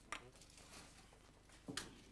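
Quiet room with two brief knocks about a second and a half apart, one just after the start and one near the end, from men getting up from a tavern table and moving off.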